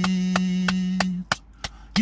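Hand claps in a steady beat, about three a second, over a man's voice holding one sung note. The note breaks off a little past halfway, and the claps go on alone, quieter.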